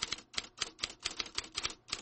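Typewriter key clicks as a sound effect, rapid and uneven at several strokes a second, struck in step with title text appearing letter by letter.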